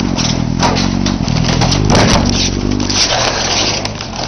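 A motorcycle engine running steadily, with loud, repeated scraping and rustling noises over it.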